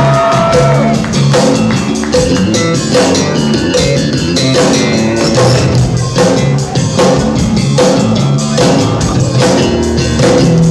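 Electric bass guitar playing a featured solo line over drum kit and tambourine-led percussion in a live band, the bass notes moving in a steady rhythm.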